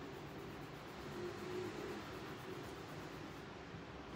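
Quiet room tone: a steady low hiss with no distinct events.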